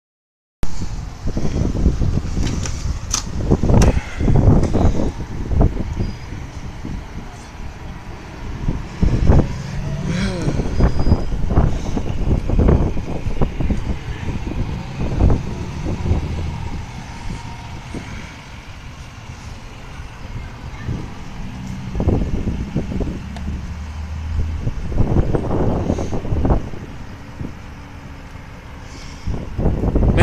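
Vehicle engines running in the street, with indistinct voices in the distance and irregular rumbles and knocks on the phone's microphone.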